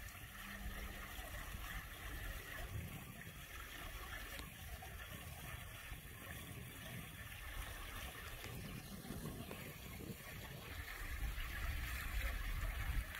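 Faint, steady outdoor background hiss with no distinct events. A low rumble grows slightly louder near the end.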